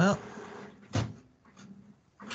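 A single short knock about a second in, after a spoken "well".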